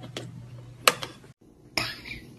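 A few sharp clicks and crackles from drinking out of a plastic water bottle, the loudest about a second in, over a low steady hum. The sound breaks off abruptly and a brief noisy burst follows near the end.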